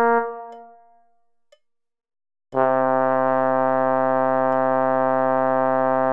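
Synthesizer playing the Bass I line of a choral rehearsal track: a held note fades away over the first second, there is about a second and a half of silence, and then a new steady note starts about two and a half seconds in and is held.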